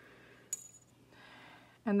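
A single sharp metallic click with a brief high ring, a metal clay blade tapping the work tile as it is set down after lifting off the stud, followed by faint handling noise.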